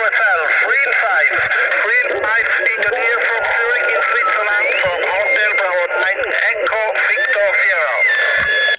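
Shortwave SSB voice reception on the 40-metre band from a portable QRP transceiver's speaker. Several voices overlap and are hard to make out, mixed with whistling carrier tones. One tone holds steady and another glides upward about five seconds in.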